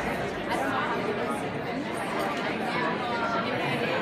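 Indistinct background chatter of many overlapping voices in a large, busy room.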